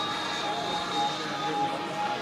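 Electric ducted fan of a radio-controlled L-39 Albatros model jet, a seven-blade 90 mm VASA fan, running in flight with a steady high-pitched whine.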